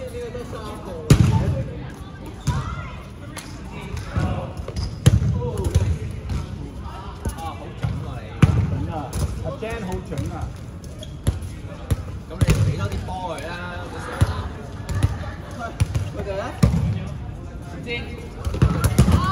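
Dodgeballs thrown hard and smacking onto the court floor and players in sharp, irregular thuds, mixed with players shouting to each other during play.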